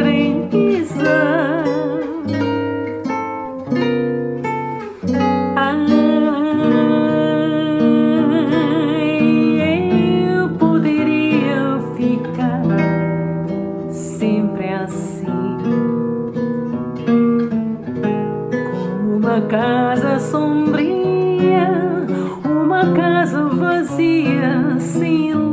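A woman singing with vibrato to acoustic guitar accompaniment.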